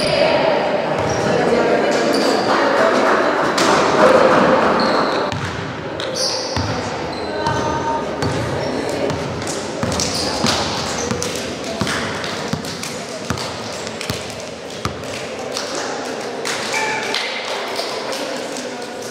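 Indistinct chatter of players and bystanders echoing in a sports hall, louder in the first few seconds, with scattered basketball bounces on the wooden floor.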